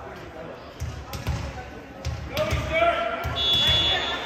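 Repeated low thuds on a hardwood gym floor, with players' voices calling out. About three seconds in, a referee's whistle is blown once and held briefly.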